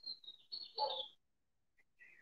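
Faint bird chirping: a high whistled call that drops a little in pitch over the first second, then a shorter falling chirp near the end.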